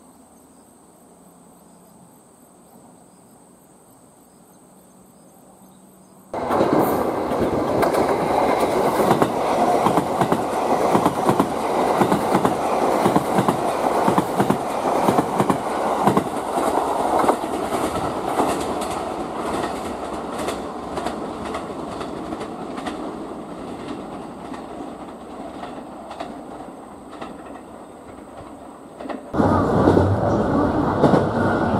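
Limited express electric train passing close by at speed: a loud rush of running noise packed with rapid wheel clicks over the rail joints. It starts suddenly about six seconds in and fades slowly as the train draws away. Before it, only a faint steady high whine.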